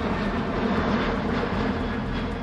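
Military transport aircraft's engines passing overhead: a steady drone with a low hum underneath.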